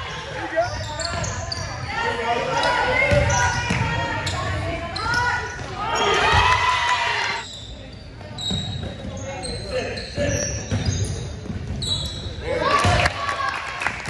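Basketball dribbled on a hardwood gym floor during a game, with running footsteps and players' shouts echoing in the hall. Short high sneaker squeaks come in the middle and near the end.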